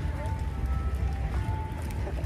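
Steady low outdoor rumble with faint held tones of distant music.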